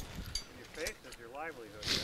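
Mostly speech: a man says "yeah", with a few faint short clicks before it.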